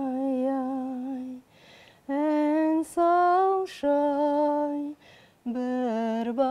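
A woman singing unaccompanied in slow, long held notes, with short audible breaths between the phrases.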